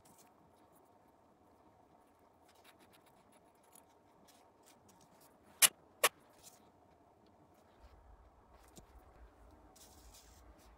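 Small metal parts, an Allen key and an aluminium regulator housing, handled on a bench mat: faint rustling and scraping, with two sharp clicks about half a second apart a little past halfway.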